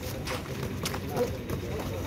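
Sparring with boxing gloves: several sharp smacks of gloves landing, with quick footwork scuffing on pavement. Faint voices sit in the background.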